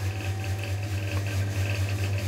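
Steady low electrical hum with a faint higher buzz from the bench equipment while the repaired Yaesu FT-2900 transmits at low power into a wattmeter.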